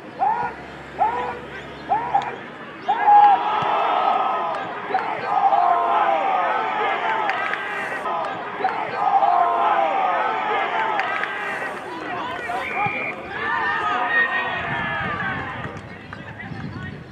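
Football spectators shouting: three short separate calls, then many voices yelling and cheering together for about ten seconds as the play goes on, easing off near the end.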